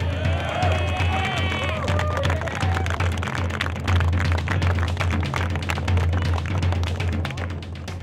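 A group of teenage boys cheering and clapping: shouts of celebration in the first two seconds, then rapid clapping that carries on. Background music with a strong steady bass runs underneath.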